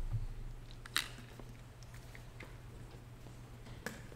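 Quiet room tone with a steady low hum and a few faint clicks and taps, one sharper click about a second in and another near the end.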